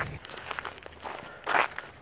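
Faint footsteps of people walking on a gravel lane, with one louder step about a second and a half in.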